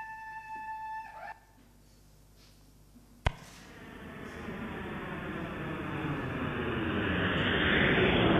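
Recorded sound of a jet airplane passing, starting after a click about three seconds in and growing steadily louder. Before it, a steady held tone ends about a second in.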